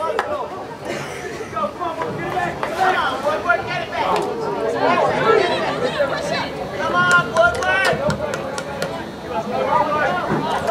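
Spectators' voices: several people talking and calling out at once, with a few sharp clicks among them.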